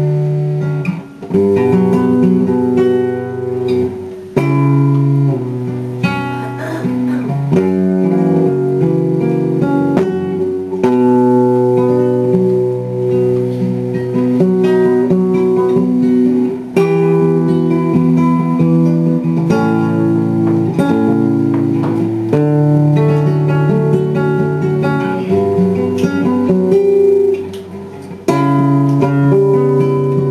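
Solo acoustic guitar playing, plucked notes and chords ringing, with a few short breaks between phrases.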